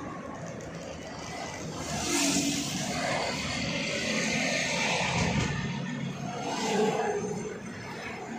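Road noise of a moving car heard from inside the cabin: a steady rush of tyres and engine that swells about two seconds in and again near the end.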